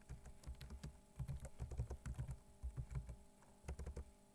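Typing on a computer keyboard: a few short runs of key clicks with brief pauses between them, as a heading is typed into a text editor.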